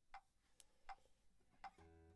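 Near silence with a few faint, short ticks, several about three-quarters of a second apart, and a faint low tone starting near the end.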